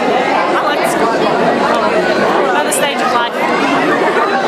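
Several people talking at once, overlapping chatter with no single clear voice.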